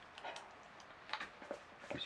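Faint, irregular light clicks and taps from a dog moving on a tiled floor as it reaches up for food, a few scattered clicks through the two seconds.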